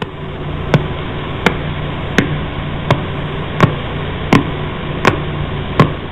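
A pulsar's radio signal played as sound: steady static hiss with a sharp click repeating at an even pace, about three every two seconds, like someone persistently knocking.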